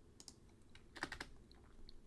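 A few faint computer keyboard keystrokes: one click shortly in, then a quick cluster of clicks about a second in.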